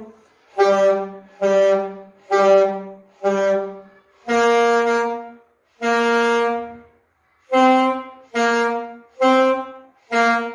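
Two saxophones playing a simple melody together, note by note with clear gaps: four short notes on one pitch, then two longer held notes, then three more short notes.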